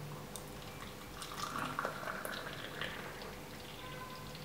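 Hot water being poured into a drinking glass: a liquid trickle with a few light clinks.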